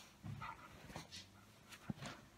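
A Great Pyrenees making a soft, low whine. A sharp click comes near the end.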